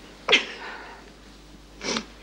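A woman crying: a sudden loud sob about a third of a second in, then a sharp breath in near the end.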